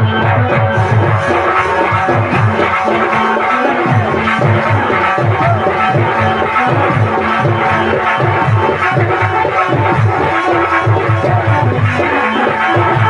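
Loud folk-drama band music with a fast, steady drum beat under sustained keyboard-like melody lines.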